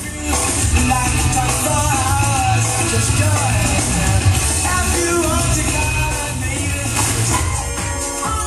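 A song with singing and a heavy bass line, played through a 1979 Akai AM-2650 stereo integrated amplifier over loudspeakers. The volume is turned up sharply a moment in.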